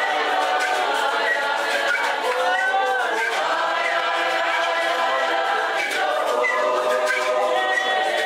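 Many voices singing together in chorus, unaccompanied, without a break.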